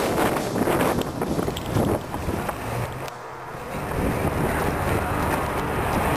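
Wind buffeting the microphone of a camera carried by a running person, a steady rushing noise with a brief lull about halfway through.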